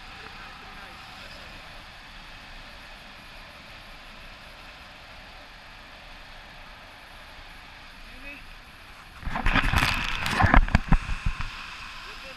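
Air rushing steadily past an action camera's microphone in paragliding flight. About nine seconds in comes a loud, rough burst of buffeting and rustling that lasts about two seconds.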